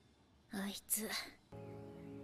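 A brief soft, whispered voice, then music comes in about one and a half seconds in with steady held notes.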